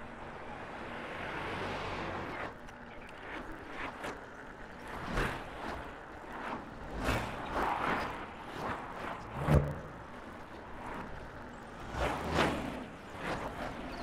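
Wind rush and road noise from a mountain bike being ridden along a paved road, with cars passing, the wind gusting on the microphone. A single sharp knock about two-thirds of the way through.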